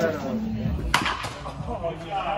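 A single sharp crack about a second in, a baseball bat hitting a ball in a batting cage, over background voices.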